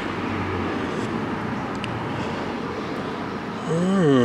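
Steady background noise with a faint low hum and a couple of faint ticks in the middle; a man's voice starts near the end.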